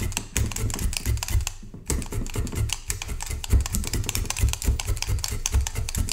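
Multi-needle felting tool stabbing wool into a bristle brush mat, a fast rhythmic run of soft taps and dull thuds of several strokes a second, with a brief pause about two seconds in.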